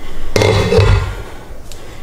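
Metal cookware being handled on a gas stove: a clattering burst of steel pot and lid noise about a third of a second in, then a faint click near the end.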